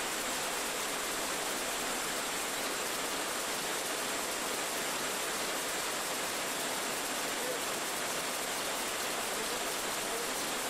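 Steady, even hiss with a faint high whine on top and no rhythm or knocks: the background noise of an old film soundtrack, with no distinct machine clatter.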